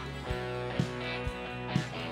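Live worship band music: strummed guitar chords over a steady beat of about two hits a second.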